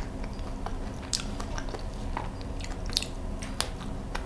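A person chewing a mouthful of baked mooncake, with scattered small, soft clicks of the mouth and teeth.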